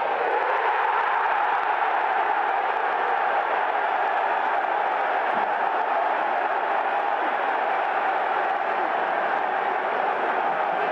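Football crowd cheering and applauding a goal: a loud, steady roar of many voices and clapping.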